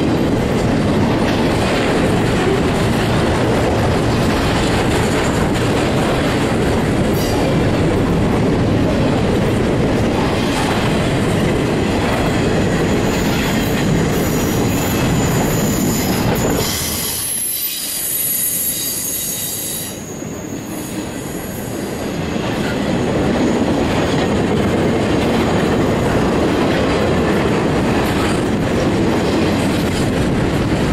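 Double-stack intermodal freight train rolling past close by: a steady rumble and clatter of steel wheels on rail. About halfway through, the rumble dips for a few seconds and high-pitched wheel squeal rings out before the rumble returns.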